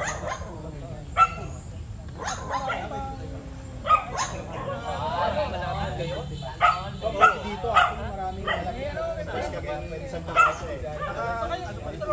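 A group of people chatting, with a dog barking in short, sharp barks several times through the conversation.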